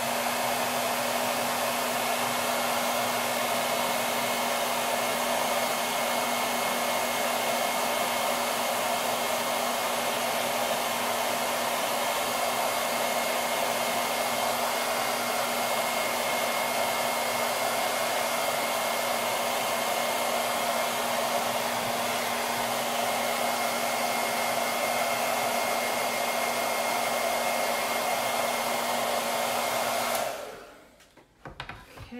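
Handheld hair dryer switched on right at the start and running steadily: a loud rush of air with a low hum and a faint high whine.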